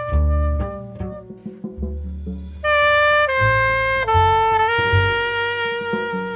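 Live jazz trio: a saxophone holds long notes, breaks into a quick run of short notes about a second in, then settles back into sustained notes over low double bass notes.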